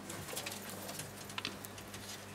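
Quiet room tone: a low, steady electrical hum with a few faint clicks.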